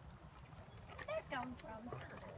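A few short, high-pitched vocal sounds about a second in, such as a child's babble or an exclamation, over a steady low rumble on the microphone.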